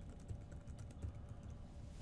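Faint typing on a computer keyboard, a quick run of key clicks.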